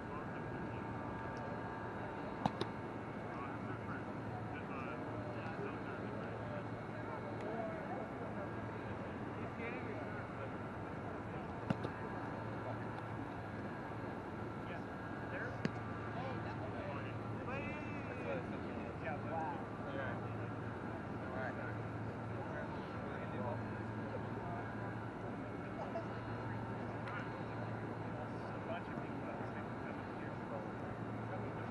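Faint, indistinct voices over a steady outdoor background noise, with three short sharp clicks.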